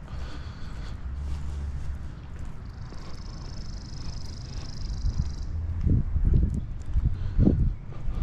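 Footsteps on a wet paved path, with wind rumbling on the microphone. About three seconds in, a high, wavering songbird trill runs for nearly three seconds.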